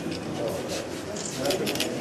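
Background chatter of several voices, with a scatter of quick, sharp clicks and rustles in the middle.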